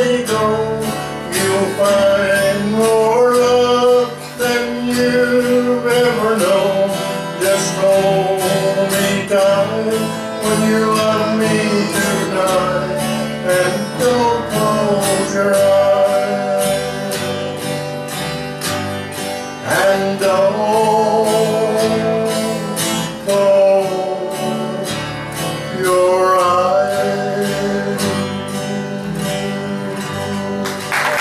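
Country music played live: a strummed acoustic guitar keeping the rhythm, with a lead melody line carrying vibrato over it.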